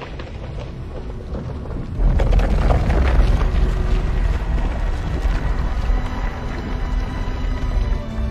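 Film score with a deep rumbling sound effect that comes in suddenly about two seconds in and carries on under the music.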